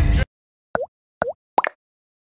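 Music and voice cut off abruptly, then three short cartoon pop sound effects from an animated YouTube subscribe end card, each a quick blip that dips in pitch and comes back up, the last two closer together.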